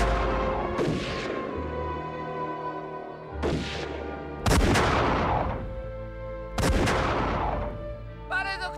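Four gunshots from long guns, each followed by a long echoing tail, about a second in, at three and a half and four and a half seconds, and near the end, the last two the loudest. A film score with sustained tones plays underneath.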